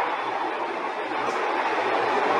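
Steady rushing background noise with no speech; the level holds even throughout.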